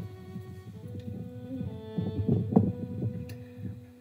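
Background music of long held notes, carrying on from a bowed string passage, over low, uneven rumbling.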